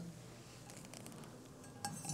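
A few faint clinks and handling sounds of an etched Tiffany glass plate being picked up, with a sharper click near the end.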